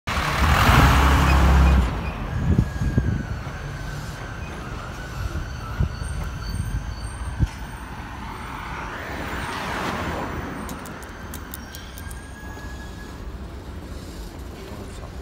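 Street traffic: a loud, low engine rumble from a large vehicle for the first two seconds, a few sharp knocks, then steady traffic noise with a vehicle passing by about nine to ten seconds in.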